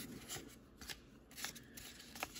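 Stack of baseball cards being flipped through by gloved hands, each card slid off the front of the stack. Three faint, short swishes about half a second apart.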